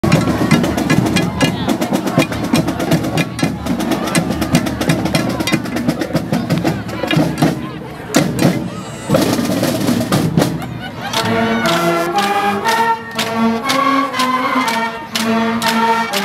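High school marching band: the drumline plays a cadence of rapid drum strokes, and about eleven seconds in the wind and brass instruments come in with a melody over the drums.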